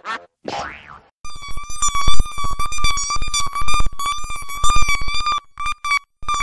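Digitally distorted cartoon logo jingle: a few short bursts, then from about a second in a steady, buzzing, slightly wavering whine made of very rapid pulses, which breaks into choppy stutters near the end.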